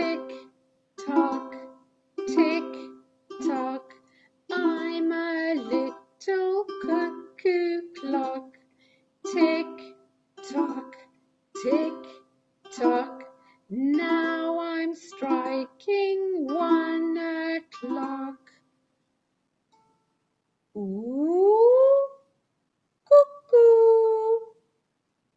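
Ukulele strummed in a slow, even beat of about one strum a second, with a woman's voice singing along. The playing stops about 18 seconds in, and after a short pause a single voice slides upward in pitch.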